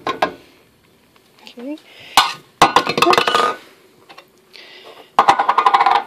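Metal can clinking and knocking against a metal saucepan as pineapple chunks are tipped out of it. There is a cluster of sharp clinks about two seconds in and a quick run of clinks near the end.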